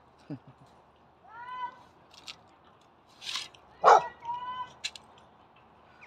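Dogs barking and yelping: a few short, pitched yelps and one louder bark about four seconds in.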